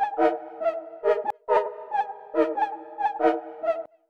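Synthesizer chord loop in G sharp minor played back from an Arturia Analog Lab V instrument: short repeated notes over held chords, with chord changes, cutting off just before the end. It is a test playback of the simplified chords with a reworked bass note.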